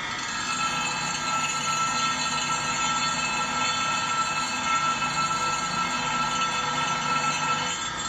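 Grinding wheel running against the serrated edge of a steel carved-cutting blade, sharpening it: a steady grinding with a high whine, a little louder from about half a second in.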